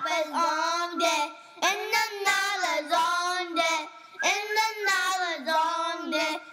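A child singing a melody without clear words, in short phrases with brief breaks about a second in and again about four seconds in.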